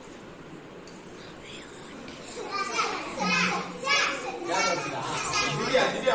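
Schoolchildren's voices calling out in a classroom, starting about two seconds in after quiet room noise and overlapping.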